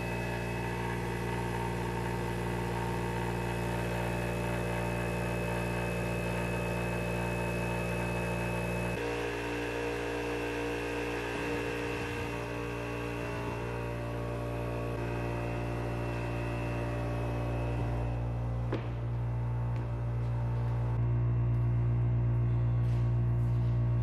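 Sanborn vertical air compressor running steadily in a carpet-lined sound-deadening box, a continuous motor hum with several held tones, while a panel is fitted over the box's open side. The tone changes about nine seconds in, and a single knock comes about three-quarters of the way through.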